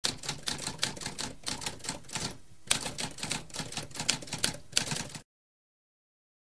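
Typewriter typing: a quick run of sharp key strikes with a brief pause near the middle, stopping abruptly a little after five seconds in.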